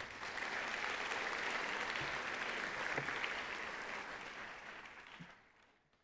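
Auditorium audience applauding: the clapping builds quickly, holds steady, then fades away near the end.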